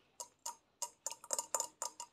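Fingernails tapping on a gumball machine's glass globe: about ten light, quick clicks at an uneven pace.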